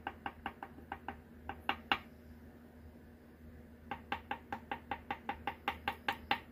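Small paintbrush tapping dots of white ink onto glossy photo paper: quick light taps, about four or five a second, in two runs with a gap of about two seconds between them.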